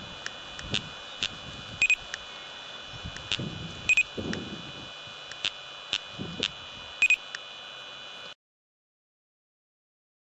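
Electronic beeps and clicks from an LTI Ultralyte laser speed gun firing three shots at an approaching car: three louder double beeps come about two to three seconds apart among lighter clicks, over a steady high hiss. The sound cuts off suddenly about eight seconds in.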